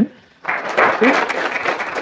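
Audience applauding, the clapping starting about half a second in and going on steadily.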